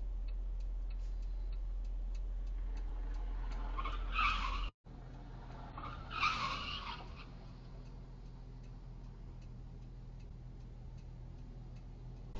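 Car tyres squealing in a skid, in two bursts about four and six seconds in, heard from inside a car over a steady low cabin hum and a regular light ticking. The sound cuts out for a moment just before the second squeal.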